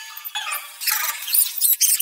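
Cartoon soundtrack played four times too fast: the voices and effects come out as rapid, high-pitched squeaky chatter and shrieks.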